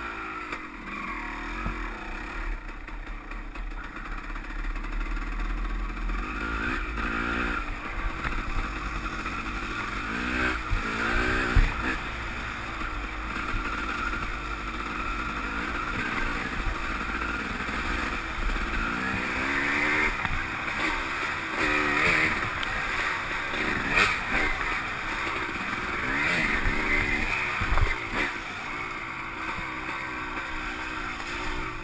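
Dirt bike engine under way on a trail ride, revving up and easing off again and again as the rider works the throttle.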